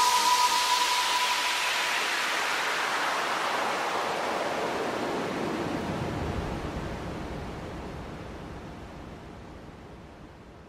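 A hiss of noise that sweeps steadily downward in pitch while fading out, closing an electronic music track. A held tone lingers from the music for the first second or two.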